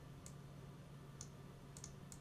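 A few faint, sharp clicks from a computer mouse while text is selected on screen, over a low steady hum.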